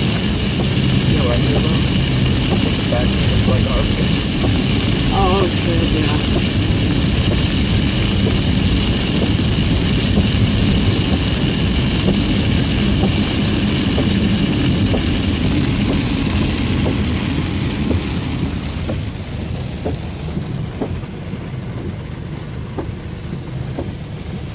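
Inside a car driving through heavy rain on a flooded road: engine and road noise with tyres running through standing water and rain on the car, a steady rumble that drops in level for the last few seconds.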